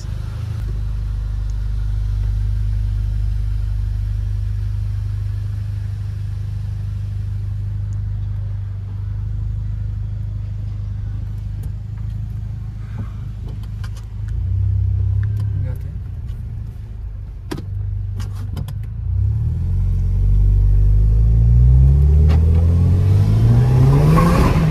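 Volkswagen Jetta TSI's turbocharged engine breathing through a newly fitted 3-inch stainless steel exhaust, heard from inside the cabin. It holds a steady low drone at low revs, then climbs in pitch and grows louder as the car accelerates over the last few seconds.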